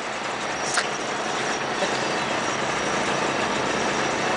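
A boat's engine idling, a steady running hum with noise over it, and one brief click a little under a second in.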